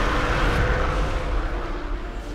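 A loud rushing roar sound effect over held orchestral notes, fading away near the end.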